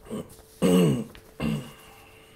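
A man clearing his throat, in three short voiced bursts, the middle one the loudest and falling in pitch.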